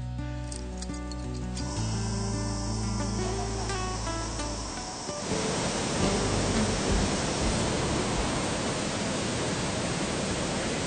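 Background music with long held tones, which stops about halfway through. It gives way to the steady, even rush of a waterfall plunging into a pool.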